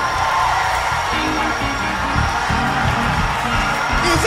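Live gospel band music: an instrumental passage carried by a moving bass line, with a few held higher notes near the start.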